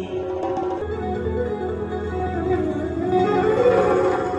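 Live music amplified through a microphone and speakers: a male singer with a plucked-string accompaniment.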